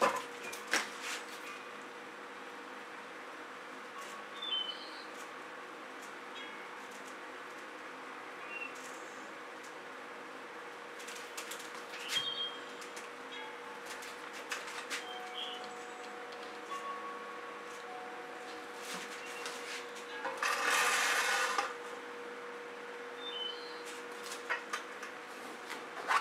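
Quiet room tone with a steady hum, scattered faint clicks and a few short high chirps, and a brief rushing hiss about twenty seconds in.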